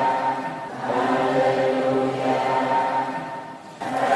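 Choir singing a slow hymn in long held chords, with a brief dip in loudness near the end as one phrase gives way to the next.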